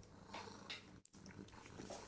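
Very faint, brief rustles of a cat's paw pawing at a plastic tablecloth, a couple of soft scratches in otherwise near silence.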